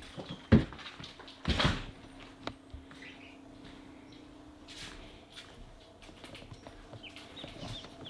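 A couple of knocks in the first two seconds, then faint peeping of young chicks in a brooder, growing a little more frequent near the end.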